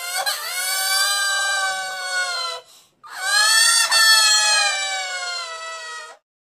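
Two long, high-pitched crying wails, electronically pitch-shifted and processed. Each swoops up at the start and then slowly sinks, the second beginning about three seconds in after a short gap.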